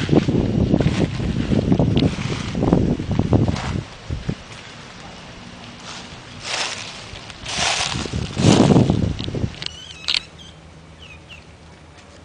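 Wind buffeting the microphone in gusts. Then three rustling crunches like footsteps through dry leaf litter, followed by a few faint, short, high chirps.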